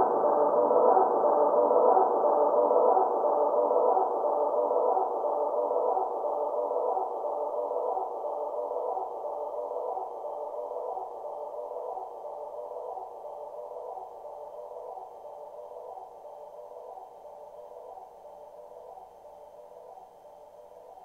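Looped electric-guitar ambient drone through delay, vibrato and reverb pedals: a sustained chord of steady tones with a soft, regular pulse, fading out slowly and evenly, the higher tones dying away first.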